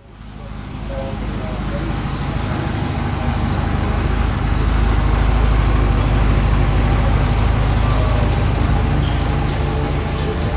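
Cadillac CTS-V's supercharged V8 running, cutting in suddenly and swelling over the first second, then steady and loud with a deep rumble.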